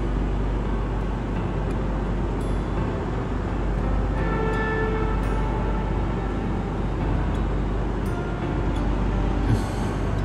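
Steady low background rumble with a constant hum under it, a few faint clicks, and a brief faint tone about four seconds in.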